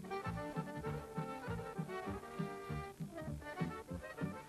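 Instrumental introduction of a folk (narodna) song played by a band: sustained melody lines over a steady, repeating bass beat, with no singing yet.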